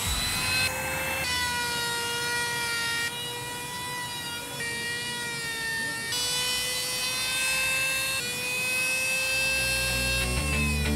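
Handheld electric trim router running at high speed while its bit carves into a wooden board. It makes a steady high whine whose pitch shifts slightly several times as the cutter bites into the wood.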